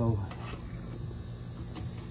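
Steady low electrical hum from a running electric melting furnace, with an even high-pitched hiss over it.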